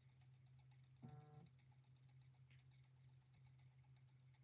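Near silence: room tone with a steady low hum, and a brief faint pitched sound about a second in.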